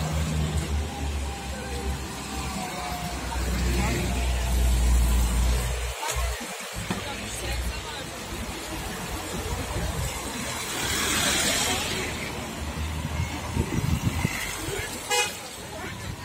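Car moving slowly along a wet road: a steady low engine and road rumble, with a hiss of tyres on wet tarmac swelling about eleven seconds in.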